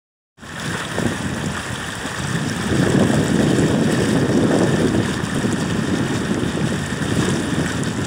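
Fast-flowing river water rushing steadily, starting just under half a second in and growing a little fuller after a few seconds.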